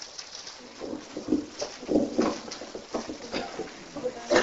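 Quiet room tone in a hall, with a few faint, short low sounds scattered through the middle.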